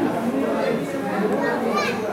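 Speech: a man talking to a roomful of people at a small meeting.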